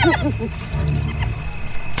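Spotted hyenas calling: the tail of a high, rising-and-falling giggling call in the first moment, then low, steady growling.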